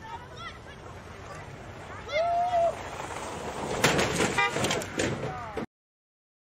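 A car skidding on a snowy street. Shouts and a held horn-like tone come about two seconds in, then a second and a half of loud crunching and clattering as the sliding car strikes the parked cars, which cuts off abruptly.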